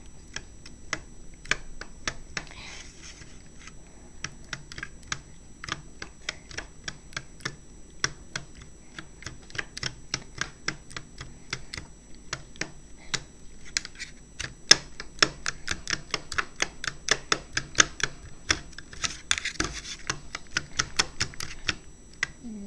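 Clear plastic spoon stirring a glue-and-borax mixture in a plastic cup as it thickens from slime toward putty: a run of sharp, irregular clicks and taps of the spoon against the cup, several a second, coming faster and louder in the second half.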